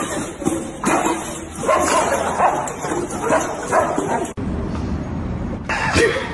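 Dogs yipping and whimpering, mixed with people's voices. A hard cut a little past four seconds in changes the sound to a quieter stretch, with another short pitched call near the end.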